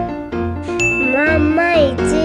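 Chiming outro jingle music with bell-like notes. About a second in, a high voice slides up and down over it.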